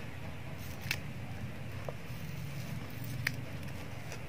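A few faint clicks and snips of scissors cutting an adhesive strip, over a steady low hum. The blades are gummed with tape adhesive, so they stick and cut with difficulty.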